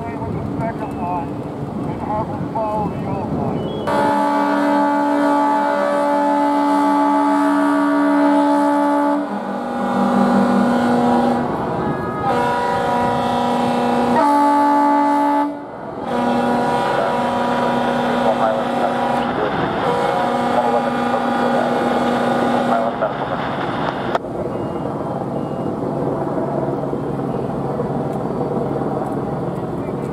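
Fire apparatus air horns sounding a series of long blasts of several seconds each, with short breaks between them and at two or more different pitches, stopping about 24 seconds in.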